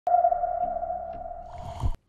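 Electronic intro sting: a single held tone starts sharply and slowly fades, then a low whoosh swells up near the end and cuts off abruptly.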